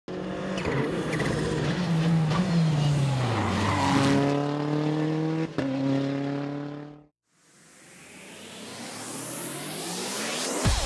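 Rally car engine running hard with tyre skid noise; the revs fall, then hold steady, before the sound cuts off suddenly about seven seconds in. A rising whoosh then swells up out of the silence.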